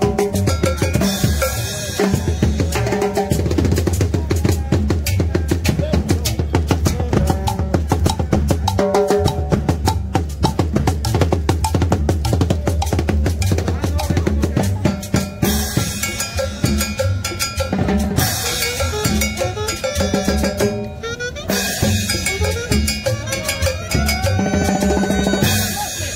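Live dance band playing, led by a drum kit: snare and bass drum drive a fast, steady beat over a sustained bass line. Bright cymbal washes come in at a few points, about a second in, around two-thirds through and near the end.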